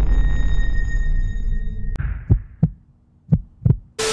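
Intro sound effects: a low rumbling boom with a thin ringing tone fades out over about two seconds. After a click, a heartbeat sound effect follows: two lub-dub double thumps.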